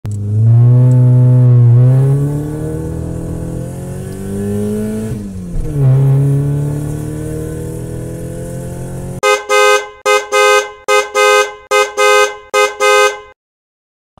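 Car engine accelerating, its pitch rising, dipping about five seconds in and climbing again before holding steady. From about nine seconds in, a car horn sounds about nine short honks, roughly two a second, then stops.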